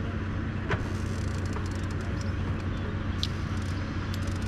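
A steady low mechanical hum and rumble, like a motor running at a distance, with a couple of faint brief clicks.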